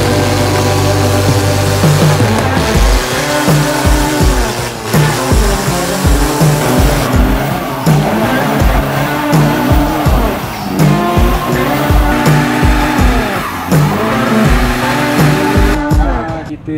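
Background music with a steady beat, mixed with pickup truck engines revving up and down and rear tyres squealing as they spin in burnouts.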